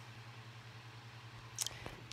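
Quiet room with a steady low hum. Near the end come a brief hiss and a few faint clicks.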